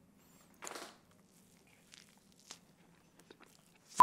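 Faint mouth sounds of eating a wine-soaked piece of pancake: one short, wet bite or slurp a little over half a second in, then a few soft clicks of chewing, the rest near silent.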